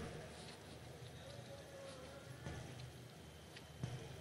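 Near silence in a pause in a spoken talk: faint ambient hiss of a large venue, with the tail of the voice fading in the first moment and a few faint clicks.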